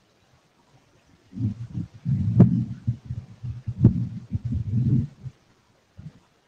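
Microphone handling noise: low thumps and rubbing as a microphone is handled and set up, with two sharp clicks, the second a little over a second after the first.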